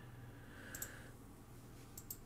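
Faint computer clicks over quiet room tone, with a quick pair of clicks a little under a second in.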